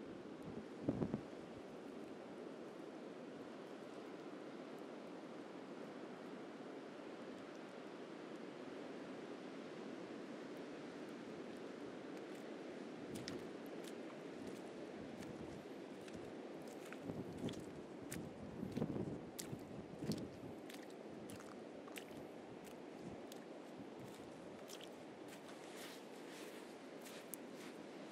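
Steady wash of surf on a beach, with footsteps crunching and squishing in sand; the crackling steps grow more frequent in the second half. A brief thump comes about a second in.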